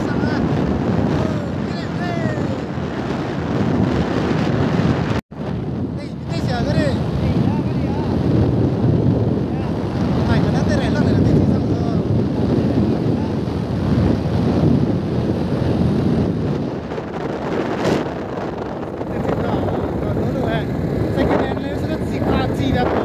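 Wind buffeting the microphone of a phone carried on a moving scooter, over the scooter's running and road noise. The sound cuts out for an instant about five seconds in.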